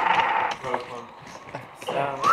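Voices around a card table, trailing off in the first half second and starting again near the end, with a few light clicks of poker chips being handled in the quieter stretch between.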